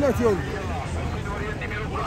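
Several voices shouting short calls over crowd noise and a steady low rumble during a tbourida charge of galloping horsemen.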